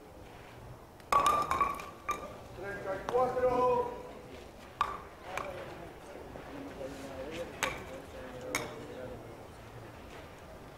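A thrown wooden bolo-palma ball striking the wooden skittles about a second in: a sharp clack with a short ringing, followed by a voice calling out and a few more single knocks of wood on wood.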